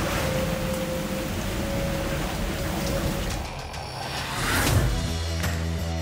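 Storm noise aboard an IMOCA 60 ocean-racing yacht in heavy seas: wind and water rushing over the boat in a steady hiss, with a thin steady tone that fades out about halfway. Near the end a swelling whoosh leads into music.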